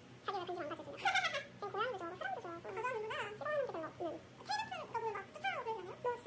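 Two women chatting in Korean in quick back-and-forth, their voices pitched unusually high and sing-song.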